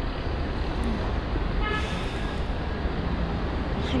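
Steady low rumble of city street traffic, with a brief faint high tone about two seconds in.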